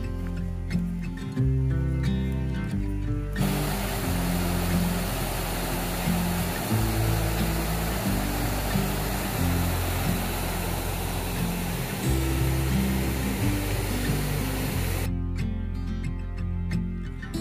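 Background music with steady bass notes throughout. From about three seconds in until just before the end, the steady rush of a small stream pouring over rocks plays under the music, starting and stopping abruptly.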